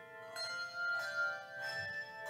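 Handbell choir playing a hymn arrangement: three fresh strikes of bells about a second apart, each note ringing on and overlapping the next.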